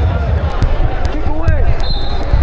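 Live wrestling-match audio in a large hall: coaches and spectators shouting over repeated dull thuds of the wrestlers' bodies and hands on the mat, with a few sharp clicks.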